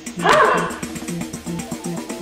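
Dance music with a steady beat played from the Meteer AI dancing robot's built-in speaker as it performs a dance, with a short loud call that bends in pitch about a quarter of a second in.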